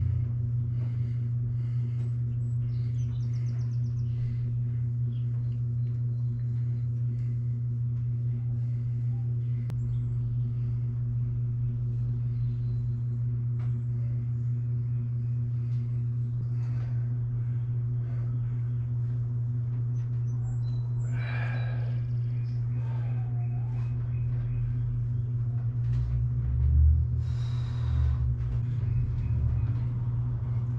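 A steady low hum with a few overtones, with short breathy sounds about two-thirds of the way in and again near the end, and a low thud shortly before the end.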